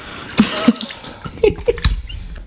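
Cola sloshing and splashing in a bathtub as a person moves in it, with a few short vocal sounds mixed in.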